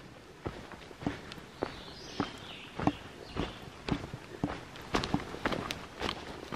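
A hiker's footsteps in trail shoes on a dirt forest path, at a steady walking pace of about two steps a second.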